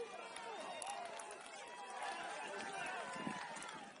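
Many indistinct voices shouting and calling over one another, from the players, coaches and spectators of a football game, with no single speaker clear.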